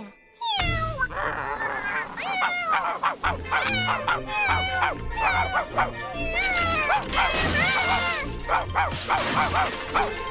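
A cartoon kitten meowing and a cartoon dog barking, many short calls swooping up and down in pitch, over lively background music.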